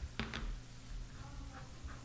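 A couple of light clicks about a quarter second in, then a few faint clicks and knocks as small tools are handled on a tabletop: tweezers set down and a metal hand microtome taken up.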